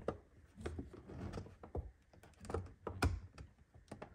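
Faint, scattered small clicks and scrapes of a flat-blade screwdriver tip working against a plastic end cap on a radio housing, prying at its locking tabs.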